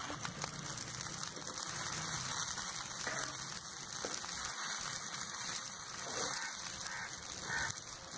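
Fish frying in oil on an iron tawa over a wood fire: a steady sizzling hiss.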